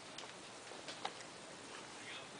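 Quiet radio-studio room tone: a faint even hiss with a few small, sharp clicks.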